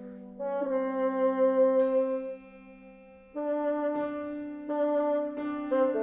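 Contemporary classical ensemble music for a bassoon concerto: sustained wind and brass chords that change pitch. Near the middle a sharp struck accent is followed by a brief hush, and then shorter, separated chord entries.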